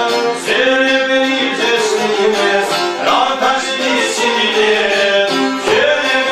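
Albanian folk music played live on plucked long-necked lutes (çifteli/sharki), with a man singing over the strumming.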